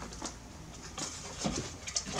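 A few light knocks and taps as the wooden struts of a headboard are slid down against the bolts and sides of a divan bed base.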